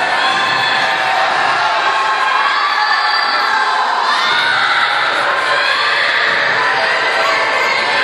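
A large crowd of spectators cheering and shouting, many high voices overlapping without a break.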